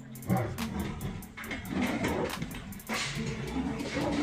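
A lion and a tiger growling at each other as they fight, in a series of irregular calls.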